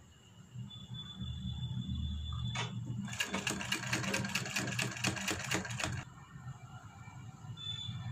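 Domestic sewing machine stitching one short run of about three seconds, starting about three seconds in: a rapid, even ticking of needle strokes that stops suddenly. A single click comes just before it.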